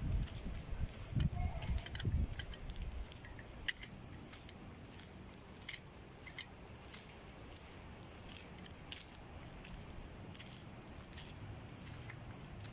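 Small birds chirping in short, scattered calls over a faint steady outdoor hush. In the first two seconds or so there are low buffeting rumbles on the microphone.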